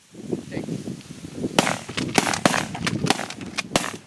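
A quick volley of shotgun shots, about eight in a little over two seconds, starting about a second and a half in, too fast for a single gun.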